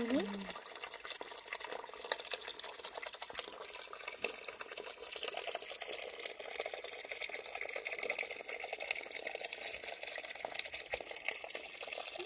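A thin stream of water trickling and splashing where it spills out between stone blocks onto the ground and into a shallow channel: a steady, even splashing hiss.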